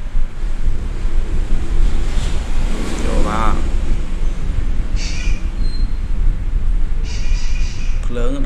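Steady low rumble and hiss of background noise on the microphone, with a brief voice sound about three seconds in.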